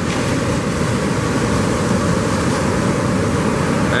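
Ocean surf breaking and washing through the shore break, with wind buffeting the microphone: a steady rush of noise.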